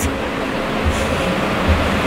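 Steady street traffic noise from buses and cars, with soft low thumps repeating a little under once a second from walking.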